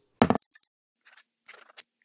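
A short, sharp thump about a quarter second in, followed by a few small clicks and faint, scratchy strokes of a quill pen nib on paper, a sound effect for an animated handwritten logo.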